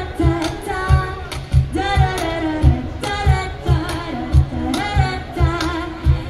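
Live acoustic pop song: a woman singing, her held notes wavering with vibrato, over acoustic guitars and a steady low percussion beat.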